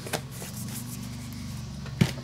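A few light clicks and taps of hands handling craft tools and a plastic stencil on a work desk, over a steady low hum.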